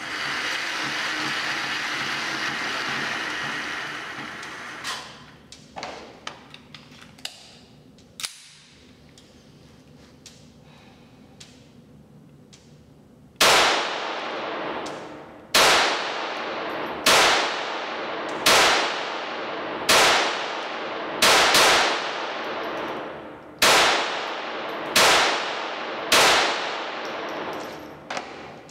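A .22 LR conversion on an EAA Witness pistol fired ten times, about one to two seconds apart, each shot ringing out in a concrete indoor range. Before the shooting comes a few seconds of steady whirring from the range's target carrier sending the targets downrange, then a few small handling clicks.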